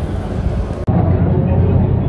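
Busy background noise with indistinct voices, cutting abruptly a little under a second in to a louder, muffled low rumble.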